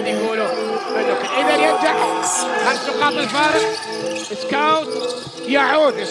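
Basketball game sound: a ball being dribbled on a hardwood court, with music running underneath.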